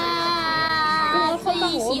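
A woman's high singing voice holding one long steady note, then bending down in pitch and sliding into the next sung words near the end.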